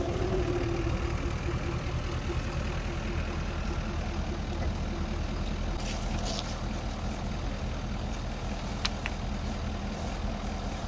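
Ford F-350 pickup's engine running low and steady as the truck creeps slowly, a front wheel rolling over a shallow-buried pipe. A couple of faint ticks can be heard over it.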